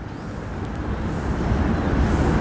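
Low rumble of a passing vehicle, growing steadily louder.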